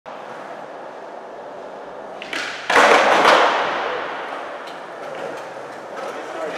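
Skateboard wheels rolling on a smooth concrete floor, with a loud board clatter a little under three seconds in that fades over a second or two, then a few light clicks.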